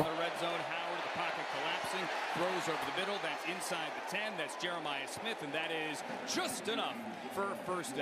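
College football TV broadcast played back at low level: a commentator talking over steady stadium crowd noise, with a few sharp knocks in the second half.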